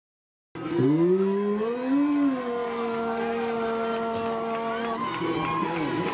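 After a brief silence, a voice rises into one long held shout of about three seconds, with crowd noise underneath; after it breaks off, several voices call and cheer over each other.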